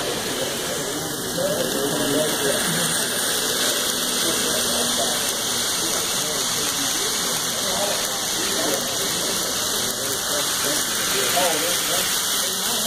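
Model trains running close past on the layout's track, a steady rolling noise, under indistinct background chatter.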